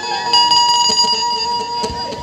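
A held, steady chord of several pitches rings bell-like through the stage sound system for about a second and a half after the singing breaks off, with a few faint taps near the end.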